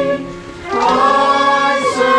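A congregation singing a hymn together in held, sustained notes, with a brief break between lines about half a second in before the singing resumes.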